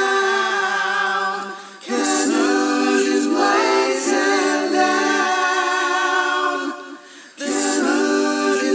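Unaccompanied vocal group singing the song in close harmony, holding sustained chords with vibrato. There are two short breaks between phrases, just before two seconds in and near the end.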